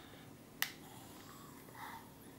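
Resealable screw-top cap of a sparkling wine bottle being twisted open by hand: one sharp click or snap a little over half a second in, among faint creaking sounds of the cap, "all sorts of weird sounds".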